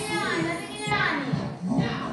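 Young children's excited voices as they play a group game, with high calls that rise and fall in pitch.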